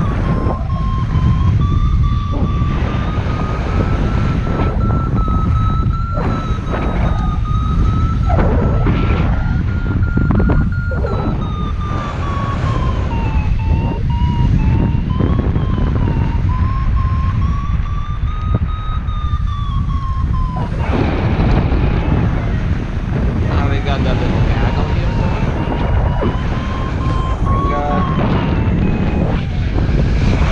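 Paragliding variometer sounding a single electronic tone whose pitch drifts slowly up and down as the climb rate changes, over heavy wind rumble on the camera microphone in flight.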